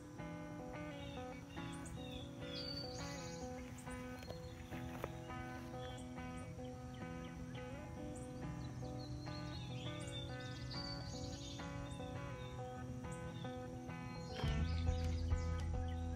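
Background intro music with steady repeating notes, and a deeper bass part coming in near the end.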